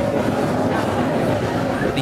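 Snowdon Mountain Railway steam rack locomotive No. 3 working hard as it pushes its carriage up the steep rack line. It makes a steady, loud mechanical din, heard from inside the carriage.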